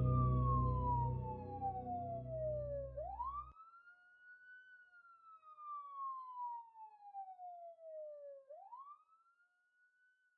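Police siren wailing in slow cycles: a quick rise in pitch, then a long, slow fall, twice. A low music drone under it cuts off about three and a half seconds in, leaving the siren alone and fainter.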